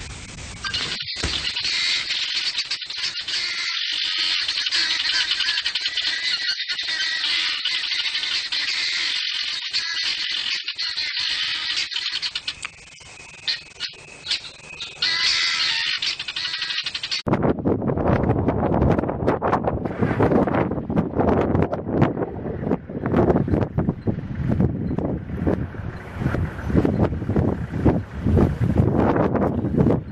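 A dense chorus of bird calls over background music. A little over halfway through, it cuts abruptly to gusty wind buffeting the microphone.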